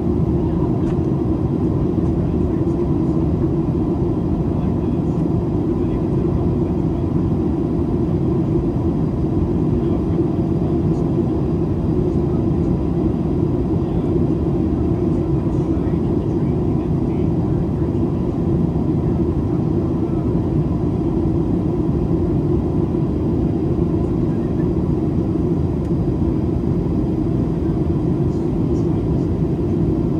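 Steady in-flight cabin noise of a Boeing 737-800 heard from a window seat over the wing: airflow and CFM56 engine sound as an even low rumble, with a faint steady tone.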